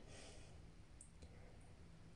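Near silence: faint room tone, with two faint light clicks about a second in.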